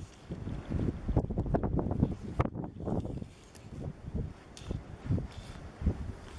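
Gusty wind buffeting the microphone in uneven rumbling puffs, with a lull around the middle.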